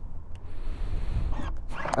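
A single light click as the Maeving RM1 electric motorcycle's battery-compartment release button is pressed, over a low rumble of wind on the microphone and a soft hiss lasting about a second.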